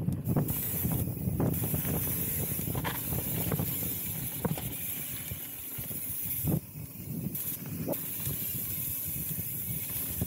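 Mountain bike rolling fast down a hard-packed dirt flow trail: steady tyre noise on dirt with wind rushing over the microphone, and scattered clicks and knocks from the bike over small bumps.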